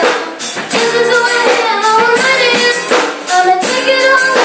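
A female voice sings a melody into a microphone over a strummed acoustic guitar, with regular rhythmic strokes running underneath, played live through a sound system.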